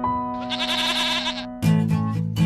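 Intro jingle music: a goat bleat sound effect, about a second long and quavering, over a held piano chord, then acoustic guitar strumming starts near the end.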